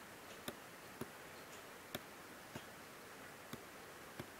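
Faint, irregular clicks of a computer mouse, about five over the stretch, against a low steady hiss.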